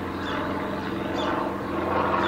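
A steady machine hum made of several low, even tones.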